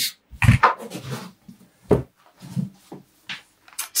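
Handling sounds: a heavy thump about half a second in, then a few softer knocks and short rustles as a large plush pillow is set down onto a small pedalboard on a rug.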